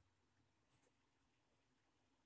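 Near silence, with two very faint short ticks about three-quarters of a second in.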